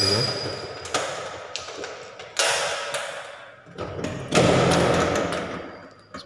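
Aluminium-framed glass balcony door being unlatched and pushed open: four sudden clunks and rattles, each trailing off over a second or so, the last one the loudest.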